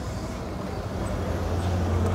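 Low, steady engine hum of a nearby motor vehicle, growing gradually louder over the two seconds.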